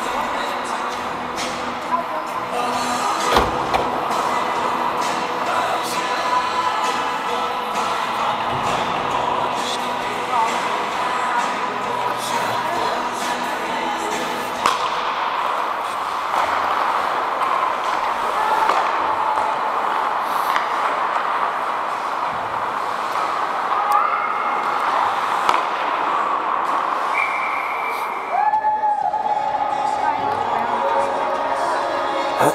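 Ice hockey play at rink level: a continuous mix of skating, players' indistinct calls, and sharp clacks and bangs of sticks, puck and boards, the loudest bang about three and a half seconds in.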